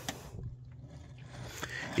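Faint scraping and a few light clicks of a flathead screwdriver tip moving over the fuel pump's locking ring as it seeks an edge to hammer against, over a low steady hum.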